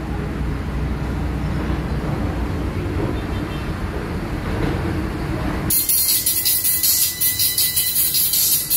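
A low steady rumble of background noise. Then, about two-thirds of the way in, a Beyma CP22 compression driver cuts in as it is wired up for a test, giving out only a thin, bright high sound that pulses in quick rhythmic beats.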